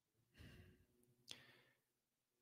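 Near silence, with a faint breath or sigh from the man about half a second in and a small mouth click a little after a second in.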